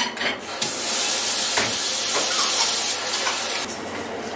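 Water running hard into a kitchen sink, a steady hiss that starts about half a second in and cuts off suddenly near the end. A few light knocks sound through it.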